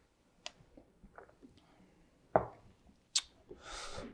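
Faint sipping through a straw from a tall highball glass, then the glass set down on a wooden cutting board with a single thump about two and a half seconds in, followed by a light click and a soft exhale.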